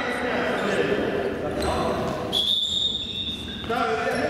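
Children shouting in an echoing sports hall, with ball thuds on the wooden floor, and a single steady, high referee's whistle blast lasting about a second and a half, a little past halfway.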